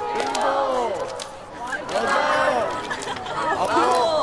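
A group of teenage girls shouting a warm-up count together, several short unison calls one after another.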